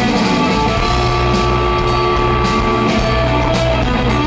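Live blues-rock band playing: electric guitar over drums, with one long note held for about three seconds.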